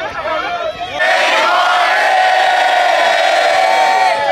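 Large crowd yelling together in one long cheer that breaks out suddenly about a second in and is held for about three seconds, after a moment of scattered chatter.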